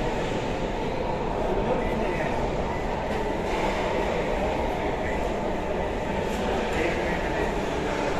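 Steady din of a busy mess hall: a constant rumbling hum with indistinct chatter underneath.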